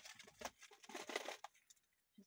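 Faint crinkling of a plastic zip-top freezer bag holding frozen pesto as it is handled, in soft irregular rustles that die away after about a second and a half.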